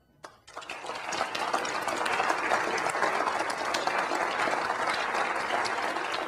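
Audience applauding: the clapping starts about half a second in, builds quickly and then holds steady as a dense patter of many hands.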